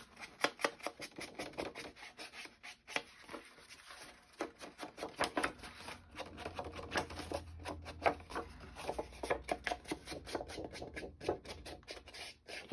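Ink blending tool dabbed and rubbed along the edges of a sheet of patterned paper in many quick strokes, with the paper rustling as it is turned and handled.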